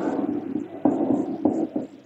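A marker being dragged across a whiteboard as words are written: a series of short scratchy strokes with sudden starts, three or four of them in two seconds.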